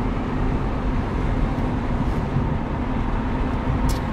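Engine and road noise inside a moving Honda Civic EK hatchback's cabin: a steady low rumble with a constant hum, holding an even speed, with a short click near the end.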